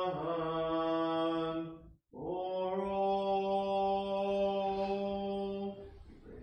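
A male voice chanting liturgically in an Orthodox service, holding long steady notes. The first note steps slightly down in pitch and breaks off about two seconds in. A second long held note follows and stops just before the end.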